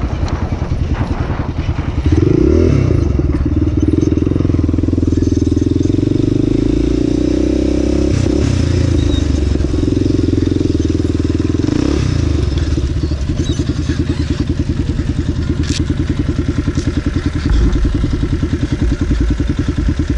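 Dirt bike engine under way: it pulls steadily from about two seconds in, then drops back to a slow, low-rpm putter from about twelve seconds in as the bike eases off.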